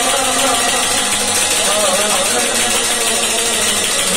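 Harmonium holding a steady reedy chord, with a man's voice singing a wavering, ornamented phrase about halfway through.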